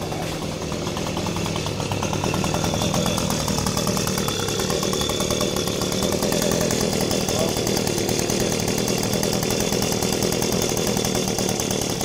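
Leaf blower motor running steadily, growing a little louder over the first couple of seconds and then holding.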